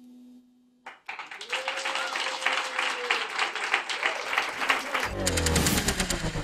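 The last held chord of an upright piano ringing, cut off about a second in, followed by applause. Near the end a television title sting with heavy, deep bass hits comes in.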